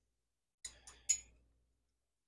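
Three light metal clinks about a second in, from steel wrenches being fitted onto the jam nuts of a Gravely Model L garden tractor's clutch adjustment rod.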